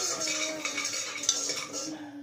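Metal cooking utensils clattering and scraping against pots and dishes, with a sharp clink at the start and another just past halfway. A steady low tone hums underneath.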